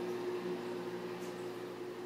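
Room tone: a steady low hum under faint, even hiss.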